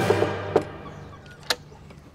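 Knuckles knocking on a door's glass panel, a few sharp raps, with one more knock about a second and a half in. Background music fades out within the first half second.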